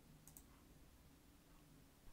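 Near silence, with one faint computer mouse click about a third of a second in.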